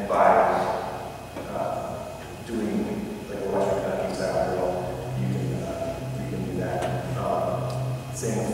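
A man speaking in a large gym: a talk that the room's hard surfaces make ring.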